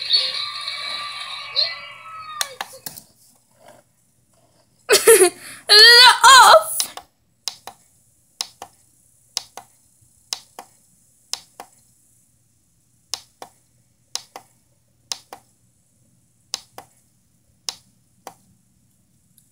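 Sound from a TV playing a children's-song DVD that is being fast-forwarded. The menu music fades out in the first couple of seconds. About five seconds in, a loud two-second scrap of the soundtrack plays, and then come short sharp clicks, mostly in pairs, about once a second.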